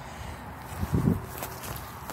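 Footstep on garden grass: one soft, low thump about a second in, over faint outdoor background noise.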